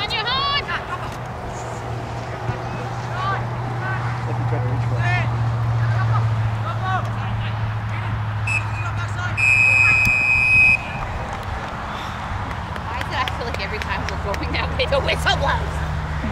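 Referee's whistle signalling the end of the first half: a short blip, then one long, steady, shrill blast of about a second, the loudest sound here. Players shout across the field before and after it.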